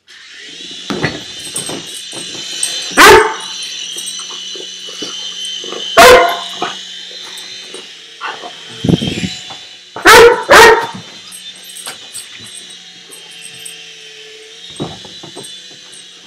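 Weimaraner puppy barking in single loud barks every few seconds, with two in quick succession about ten seconds in, at a remote-control toy helicopter. The helicopter's small electric motor and rotor make a steady high-pitched whine underneath.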